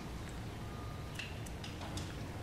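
Faint, scattered light clicks, a few of them in the second half, over a low steady hum.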